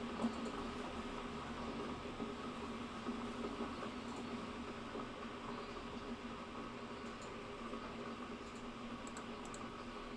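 Faint computer keyboard and mouse clicks over a steady room hum, with a few scattered clicks coming mostly near the end.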